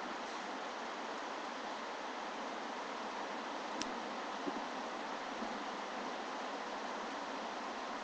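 Heavy rain pouring down, a steady even hiss.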